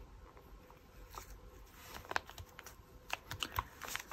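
Fingers handling and pressing paper butterfly cut-outs onto a journal page: faint paper rustling with scattered light taps, which come quicker near the end.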